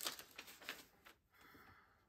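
Faint rustling and crinkling of paper as a greeting card and its envelope are handled, in short bits during the first second, then near silence.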